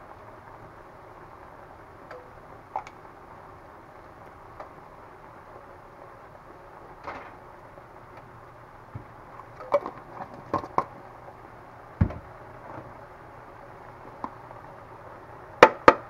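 Kitchen handling noises as minced garlic is spooned from a jar into a frying pan of vegetables: scattered light clicks and knocks, a cluster of them about ten seconds in, a dull thump about twelve seconds in and two sharp clicks near the end, over a steady low background hum.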